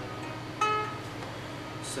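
A string plucked once on a homemade cardboard-box ukulele, the single note ringing and fading. It is plucked to check intonation while the floating bridge is being set.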